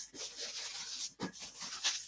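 Hands rubbing and gripping inflated red 260 latex modelling balloons, with a short sharper rub just past the middle.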